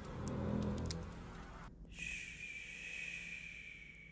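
The low tail of the backing track fades away, then about two seconds in a soft hiss of static with a steady high tone starts and slowly dies down.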